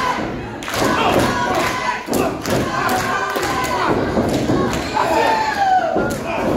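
Several thuds from wrestlers' blows and bodies hitting the ring, over a crowd shouting and calling out.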